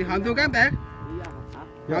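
Vietnamese kite flutes (sáo diều) on a kite in strong wind: a steady droning chord, with a wavering, lowing-like tone over it in the first second that rises and falls as the wind gusts.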